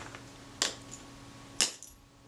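A few sharp little clicks of small metal camera parts being handled on the workbench, spaced out unevenly, the loudest near the end.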